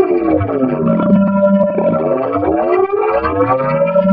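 Logo jingle audio run through heavy digital effects: several pitch-shifted copies of its tones glide up and down in mirrored arcs and cross each other twice, a wavering, siren-like sound over a held low note.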